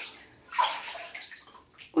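Bathwater sloshing and splashing as hands move in a filled bathtub, loudest about half a second in.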